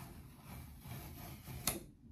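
Faint rustling of a sheet of card paper being handled, with one short tap about three-quarters of the way through.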